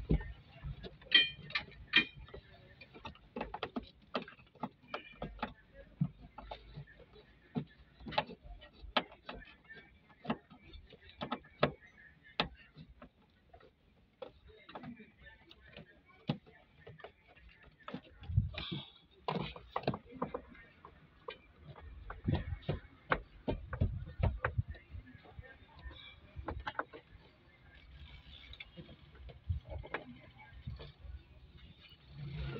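Irregular clicks and light knocks of plastic interior trim being handled and fitted in a pickup's cab, with a denser cluster of knocks around two-thirds of the way through.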